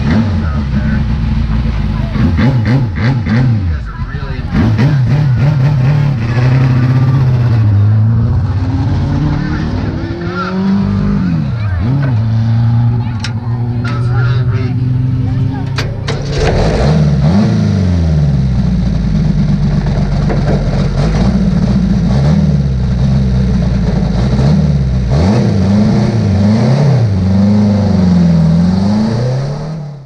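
Four-cylinder Mod 4 race car engine running while the car sits still, its revs rising and falling again and again as the throttle is blipped.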